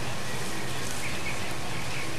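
Steady outdoor background noise with a faint low hum under it, and a faint short high chirp about a second in.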